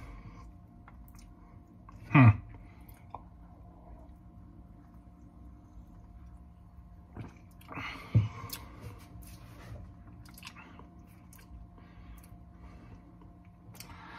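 A man's low falling "hmm" about two seconds in, then the quiet mouth sounds of someone tasting a soda: faint lip smacks and tongue clicks, and a short slurp-like noise about eight seconds in, over a steady low room hum.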